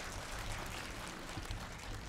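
Faint, steady background noise of the venue heard through the microphones during a pause in speech: a low hum and a soft hiss with no distinct events.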